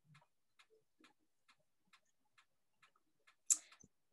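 Faint, regular ticking, about two to three ticks a second, with a short hiss near the end.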